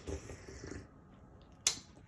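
A sip of hot espresso drawn from a mug: a short, soft slurp lasting under a second, followed a moment later by a single sharp click.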